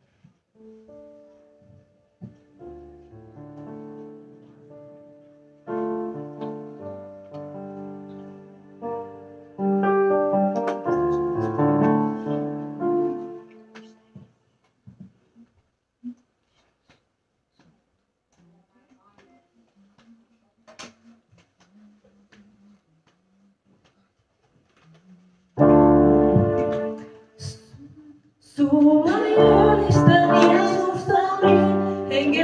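Keyboard playing sustained chords, growing louder about ten seconds in and then stopping, followed by a quiet pause. Near the end a louder chord sounds, and singing starts with the keyboard accompaniment.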